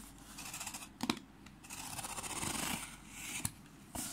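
A sharp knife slitting the packing tape on a cardboard shipping box. There is a short rasping cut early, a longer one through the middle, and a couple of sharp clicks.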